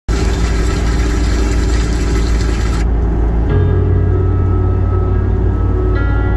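Steady low road and engine rumble of a car cruising on a highway, heard from inside the cabin. About halfway through, soft sustained music tones come in over it.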